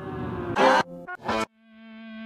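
Playback of an electronic collage piece built from material taken from an iTunes music library. Short fragments of recorded music are spliced with abrupt cuts: a note fades in and then gives way to two loud, bright bursts about half a second and just over a second in. After a brief gap, a steady low note fades in near the end.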